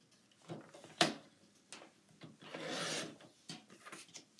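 Fiskars sliding-blade paper trimmer cutting a sheet of patterned paper. There is a sharp click about a second in, then the blade carriage runs down the rail with a sliding rub for just under a second, through the paper, followed by a few light ticks.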